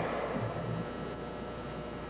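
Steady low hum and hiss of an old videotape soundtrack, with a short rush of noise at the very start.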